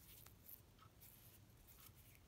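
Near silence, with a few faint light ticks and rustles of glass seed beads and beading thread being handled as the thread is drawn through the beadwork.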